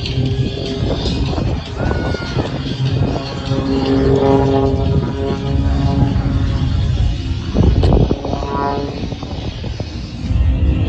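Piston engine and propeller of a small single-engine aerobatic airplane running at power as it climbs and dives through its display, with loudspeaker music alongside.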